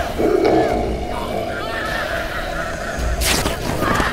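Human screams and wailing cries over a steady low drone, with a sudden rushing sweep of noise about three seconds in.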